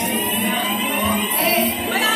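Amplified live music in a club with the bass dropped out, leaving a held tone that rises slowly in pitch.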